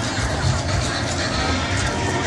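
Indistinct crowd chatter over a steady low rumble.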